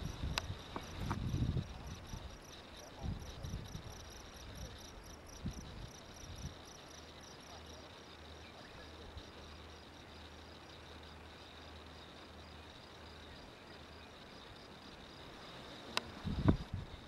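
Insects, crickets, chirping steadily in dry grassland: a thin high buzz with a regular pulse of a few chirps a second. Low thumps on the microphone come and go in the first half.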